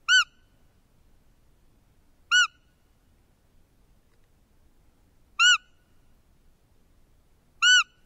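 Roe deer lure call blown four times to draw in a roe buck: short, high, squeaky whistles, each rising and falling in pitch, two to three seconds apart.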